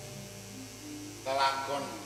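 Steady electrical mains hum under faint held tones. About a second and a quarter in, a short burst of voice stands out as the loudest sound.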